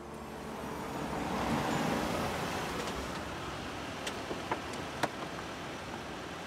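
A car drives up and comes to a stop, its engine and tyres making a steady rumble that swells and then settles. From about four seconds in there are several sharp clicks as its doors are unlatched and swung open.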